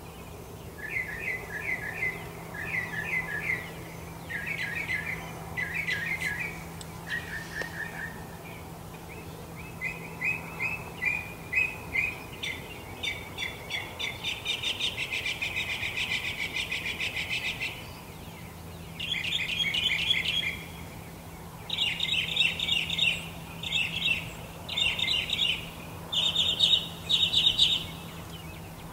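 Birds chirping in short, rapid trilled phrases, one after another with brief pauses, louder in the second half. A faint steady low hum runs underneath.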